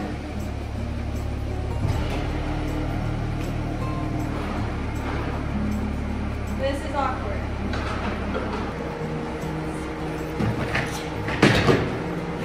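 Steady low hum of a convertible car and its power soft top folding down. Near the end there is a loud knock as a gaming chair is loaded into the car.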